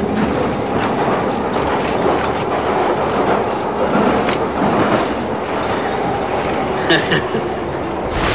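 Rumble and clatter of a rail carriage in motion on the soundtrack of an old TV commercial taped on VHS. A man laughs briefly near the end.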